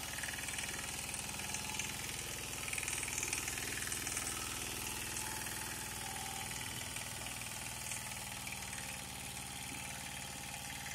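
Greaves power weeder's single-cylinder engine running steadily at constant speed while its rotary tines till wet soil, a little louder for a moment a few seconds in.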